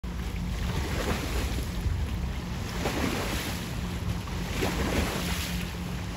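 Wind buffeting the microphone, a steady low rumble, with choppy water lapping in faint surges every second or so.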